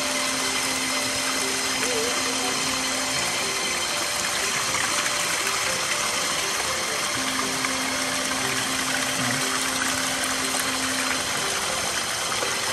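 Steady rush of water running from a small spring outlet pipe, with faint background music.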